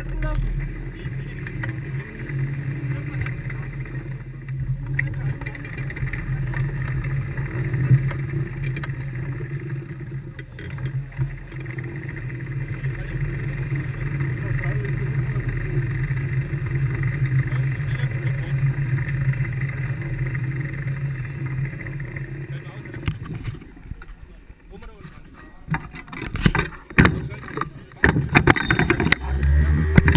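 A Formula Student race car's engine running steadily at low revs, then going quiet about three quarters of the way through. A few sharp knocks and rattles follow near the end.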